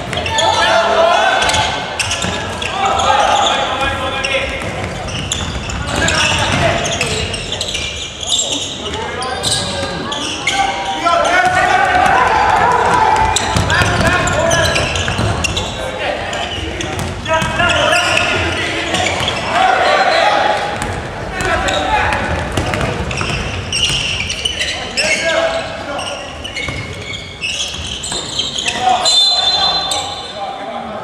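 A basketball being dribbled and bounced on a hardwood gym floor during live play, amid players' and spectators' shouts. A referee's whistle blows briefly near the end, stopping play.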